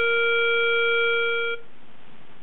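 Tempo Master iPhone app's reference-pitch tone sounding a steady B-flat (A calibrated to 466 Hz) through the phone's speaker, then cutting off about one and a half seconds in.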